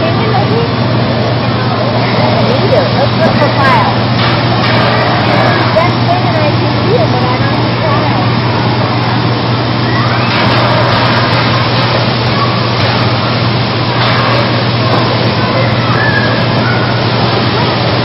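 Children shouting and calling over one another in a busy play area, over a loud, steady low hum.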